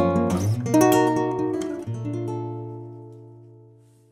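Cort CEC1 nylon-string classical guitar played with the fingers: a few plucked notes and chords, then a final chord about two seconds in that rings out and fades away.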